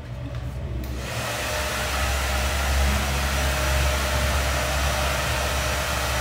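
Handheld hair dryer switched on about a second in, then running steadily as it blows over a client's freshly cut hair.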